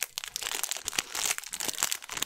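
Clear plastic wrapper crinkling and crackling as it is pulled open and crumpled by hand, a dense run of fine crackles.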